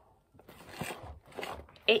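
Small cardboard mailing box being handled and turned over in the hands: a run of soft, irregular rubbing and knocking sounds.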